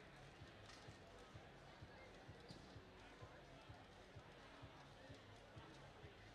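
Very faint, short, dull thumps several times a second over a quiet arena background: rubber cargo balls bouncing on the competition field.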